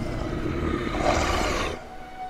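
A low, roar-like rumbling sound effect that swells into a loud rushing noise about a second in and cuts off suddenly near the end.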